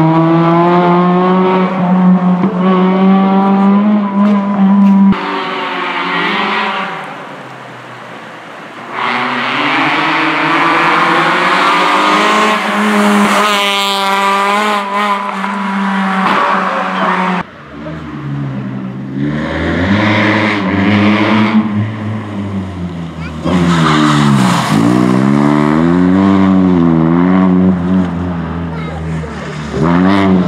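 Peugeot 206 RC's 2.0-litre four-cylinder engine revving hard as the rally car accelerates along the stage, pitch climbing and falling with each gear change and each lift-off and re-acceleration through corners. The sound jumps abruptly twice as the recording cuts to another stretch of the run.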